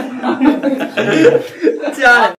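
Men chuckling and laughing amid talk.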